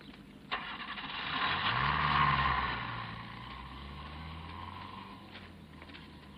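An open-top Land Rover's engine: a click, then the engine starts and revs up about two seconds in, settles and fades away.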